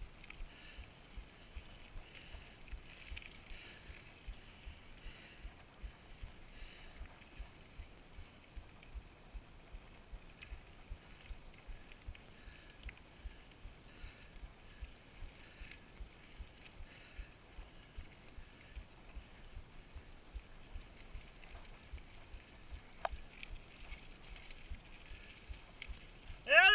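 Mountain bike climbing a gravel dirt road, heard quietly through a handlebar-mounted camera: a steady run of soft low thumps, about two to three a second, under a faint hiss, with a single sharp click near the end.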